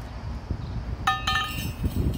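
A steel core barrel tube struck against the concrete as it is set down, ringing with a clear metallic note for about half a second, followed by a lighter second clink.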